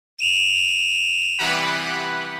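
Electronic intro jingle: a high, steady beep-like synthesizer tone, then about a second and a half in, a fuller sustained synthesizer sound.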